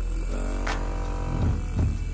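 A Hyperice Hypervolt percussion massage gun running at a high speed setting, a low steady buzz, under background music with held chords and a few drum hits.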